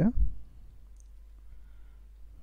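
Faint clicks of computer keyboard keys as a word is typed, after the last syllable of a spoken word at the start.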